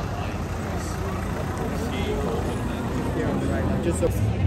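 Busy street ambience: a crowd chattering over the noise of road traffic.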